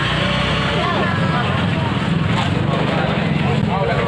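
Steady running of a nearby motorcycle engine under the chatter of people in a busy street crowd.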